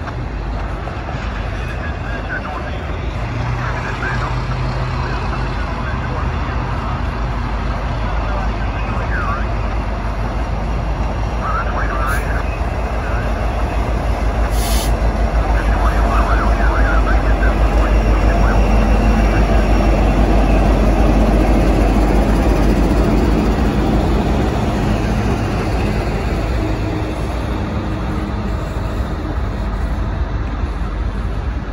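Freight train passing close by: intermodal cars rolling past with steady wheel and rail noise. The mid-train diesel locomotives come by partway through, their engines' low rumble loudest about 16 to 22 seconds in.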